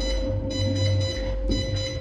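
A steady electrical hum with a constant mid-pitched tone and a faint high whine above it, unchanging throughout.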